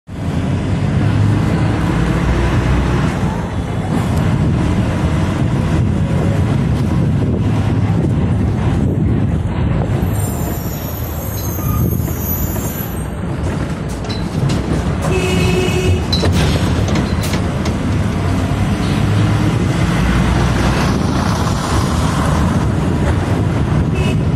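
Diesel bus engines running close by, a steady low rumble, with a brief high tone about fifteen seconds in.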